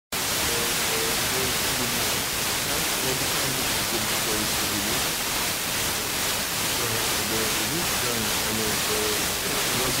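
Weak, distant FM radio broadcast received by troposcatter: a faint voice speaking, barely audible under heavy, steady static hiss. The hiss is the sign of a signal near the noise floor.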